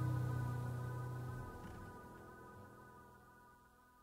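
The final sustained chord of a rock band's song fading out, its held tones dying away steadily to near silence; the low bass note stops about one and a half seconds in.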